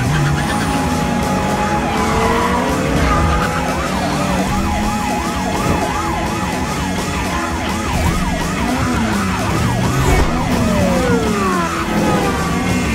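Police car sirens warbling rapidly up and down over car engines revving in a high-speed chase, with pitches sliding as the cars pass.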